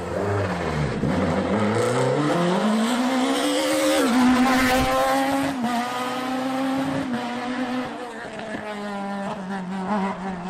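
Rally car engine accelerating hard, revs climbing steeply and then held high with a few brief dips as the driver changes gear or lifts. It fades as the car pulls away near the end.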